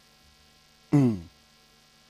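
A man's short "mm" falling in pitch about a second in, over a faint, steady electrical hum.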